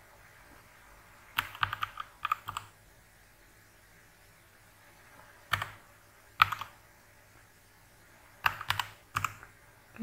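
Computer keyboard typing in short, irregular bursts: a quick run of keystrokes about a second and a half in, a couple of single strokes around the middle, and another short run near the end, with quiet pauses between.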